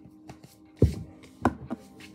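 Two sharp knocks about two-thirds of a second apart, the first the louder, with a few lighter taps around them, over a faint steady background tone.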